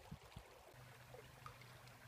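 Near silence: faint flowing creek water, with a few soft low knocks at the start and a faint steady low hum from about a second in.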